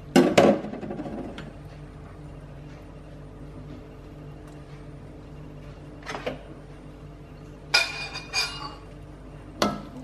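A sharp knock at the start, then a steady low hum. Near the end comes a short run of ringing metallic clinks as a ladle knocks against the wok.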